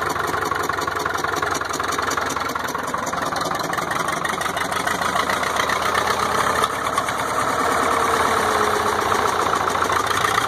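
Caterpillar RD4 bulldozer's four-cylinder diesel engine running steadily with an even pulse, getting a little louder from about seven seconds in.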